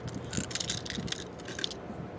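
Two plastic key-fob remote transmitters on a metal key ring rattling and clicking against each other as they are handled and lifted out of their cardboard packaging: a loose run of small clicks, busiest about half a second in.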